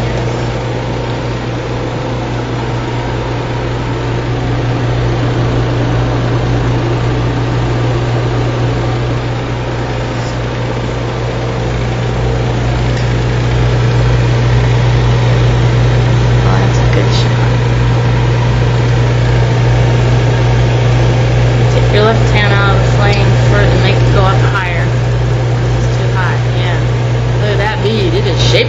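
Steady low hum with an even hiss over it, the running noise of a lampworking torch burning at the glass-bead bench. Faint voices come in briefly near the end.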